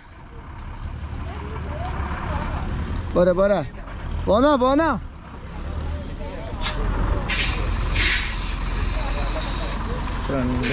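Tourist coach's diesel engine running with a low rumble as the coach moves slowly over a rough dirt track, with two short shouted calls around the middle. From about six and a half seconds in come several short hisses of air, typical of the coach's air brakes, and the engine grows louder.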